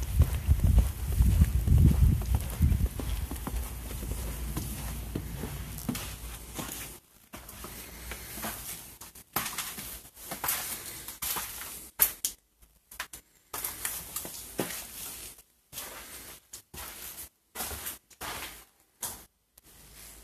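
Footsteps crunching through snow with a low rumble on the microphone, then, from about seven seconds in, footsteps indoors with scattered knocks and clicks on a debris-strewn floor, one sharp click near the middle.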